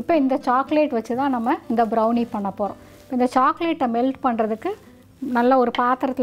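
A woman's voice talking in Tamil, with short pauses; no other sound stands out.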